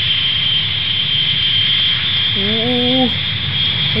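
Airliner cabin noise: the steady roar of jet engines with a constant high whine, as the plane takes off. A short hummed vocal sound comes about two and a half seconds in.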